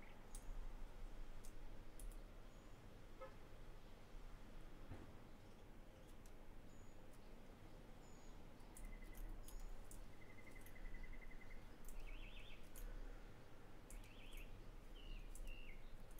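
Faint, scattered clicks from computer input during digital sculpting, over a low background hum. A few short, high chirps come in the second half, like distant birdsong.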